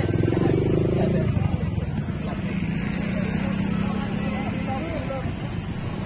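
A motorcycle engine running close by, loudest in the first second and then settling to a steady hum, with people's voices over it.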